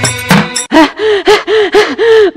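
Devotional music breaks off about half a second in, and a woman's voice takes over with a rapid string of loud, short gasping cries, each rising and falling in pitch, the vocal outbursts of a devotee in a trance.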